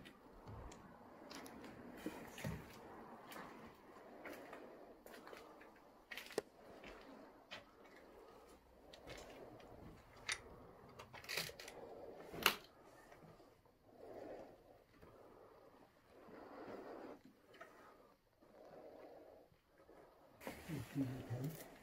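Faint footsteps crunching over broken plaster and rubble on a floor, with scattered sharp cracks of debris underfoot, the loudest about twelve seconds in, and soft rustling between them.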